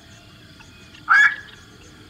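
A single short, harsh call of a black-crowned night heron, about a second in.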